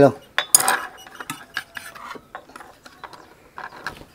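Metal serving platter lifted off a spring dial kitchen scale and set down on a wooden table: a sharp clink about half a second in, then scattered light clicks and clinks of metal on metal and plastic.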